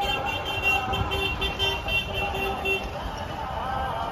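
A horn beeping in a rapid series of short tones, about three or four a second, that stops about three seconds in.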